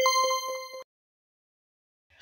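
An edited-in ding sound effect: a single bright bell-like tone that starts sharply, fades a little and cuts off after under a second.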